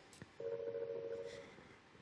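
Electronic quiz-show sound effect: a steady, dial-tone-like beep of two close pitches held for about a second, then fading away.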